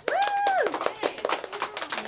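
A few people clapping in quick, irregular claps as the piano piece ends. Near the start, one voice gives a short high cheer, held for about half a second.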